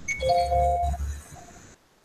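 A short electronic chime: two steady tones sounding together for about half a second, with a faint repeat of the higher tone just after, over a low rumble that cuts off abruptly near the end.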